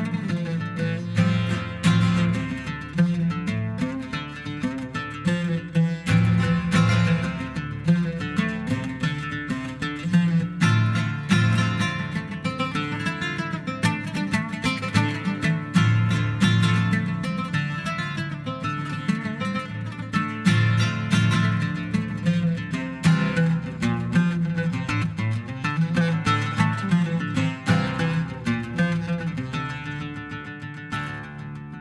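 Solo oud playing a fast stream of plucked notes over repeatedly struck low notes.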